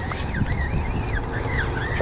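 A distant siren: a high tone wavering up and down about twice a second, over a steady low rumble of wind on the microphone.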